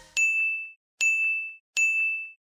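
Three identical bright, high ding sound effects, each struck sharply and fading within about half a second, coming roughly every three-quarters of a second with the last near the end.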